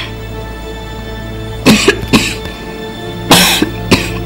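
Steady background music with held tones, under a few short, sharp coughs from a person: a quick pair about two seconds in, and a longer one past three seconds.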